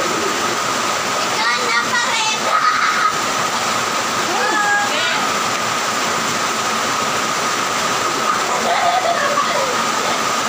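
A loud, steady rushing noise runs throughout, with a thin steady tone in it. Short bursts of high-pitched voices rise over it about a second and a half in, around five seconds, and near the end.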